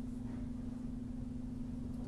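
Room tone of the recording: a steady low hum at one pitch, with faint background hiss and rumble.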